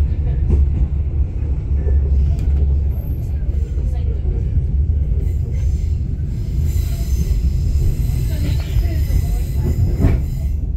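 KTM Tebrau Shuttle train running, heard from inside a passenger coach: a steady low rumble of the wheels and running gear on the track, with faint scattered clicks.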